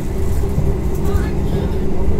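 Running noise of a moving passenger train heard inside the carriage: a steady low rumble with a steady hum over it.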